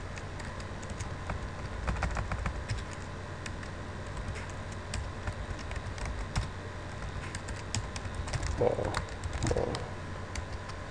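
Typing on a computer keyboard: irregular keystroke clicks with short pauses, busiest about two seconds in. There are two brief low sounds near the end.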